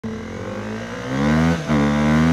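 A vehicle engine revving, its pitch climbing slowly and growing louder about a second in. The pitch dips briefly about one and a half seconds in, then climbs again.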